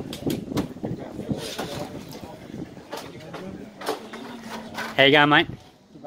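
Low background chatter of people talking, with scattered clicks. A loud voice breaks in about five seconds in.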